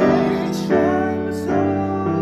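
A man singing a held, wavering line over grand piano chords, the chords changing about every three quarters of a second.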